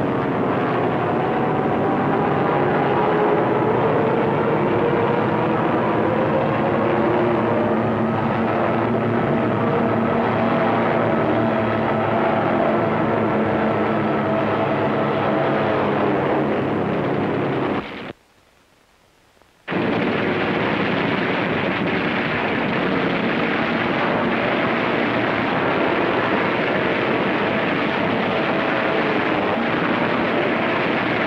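Propeller aircraft engine drone, loud and steady with its pitch slowly shifting. It cuts out abruptly for about a second and a half just past the middle, then comes back rougher and noisier.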